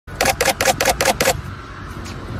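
A camera shutter firing in a rapid burst: six quick clicks, about five a second, stopping after just over a second.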